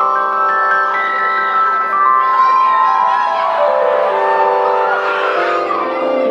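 Live band music, loud: many held, ringing notes that enter one after another and stack up into a sustained chord.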